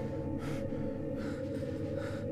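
A frightened man breathing hard through the hand pressed over his mouth, about three sharp breaths in two seconds, over a low steady drone.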